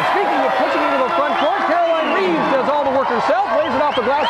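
A man's voice talking throughout: live basketball play-by-play commentary.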